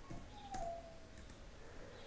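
Faint computer mouse clicks in a quiet room, with a faint short falling squeak about half a second in.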